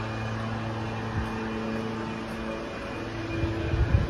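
Steady low mechanical hum, with a few soft low thumps near the end.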